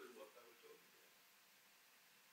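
Faint, distant speech in the first second, then near silence: room tone.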